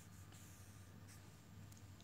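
Near silence: faint room tone with a low steady hum.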